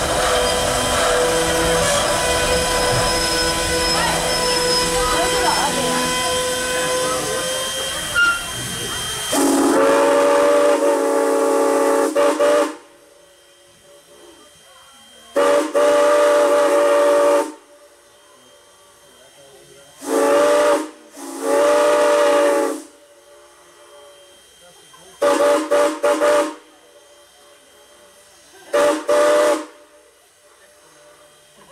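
Steam locomotive Canadian National No. 89, a 2-6-0, hissing steam loudly and steadily for about nine seconds. Then its chime-toned steam whistle sounds two long blasts, a short and a long, the standard grade-crossing warning. A few short toots follow near the end.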